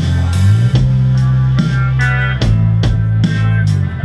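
Live rock band playing electric guitars, bass guitar and a Ludwig drum kit: a sustained low bass line under guitar chords, with regular drum and cymbal hits.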